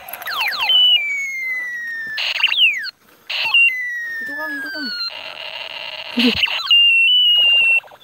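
Electronic sound effects from a battery-powered toy blaster gun being fired: several quick falling "pew" sweeps at the start, then long beeping tones that slide slowly downward, broken by short crackly bursts, and a steadier high tone near the end.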